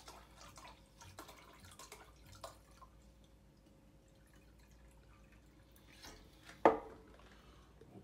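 Grain alcohol trickling and dripping from a bottle into a glass measuring cup, faint, with small drips that thin out about three seconds in. Near the end comes one sharp knock, the glass bottle set down on a wooden cutting board.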